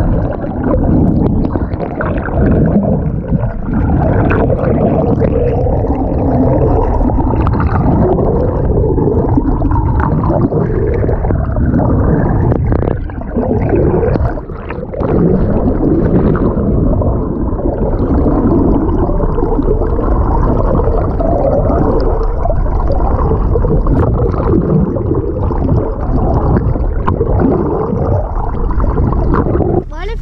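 Muffled underwater rush and gurgle of seawater heard through a camera held below the surface, with bubbling from splashes; it runs continuously with a short dip about halfway through.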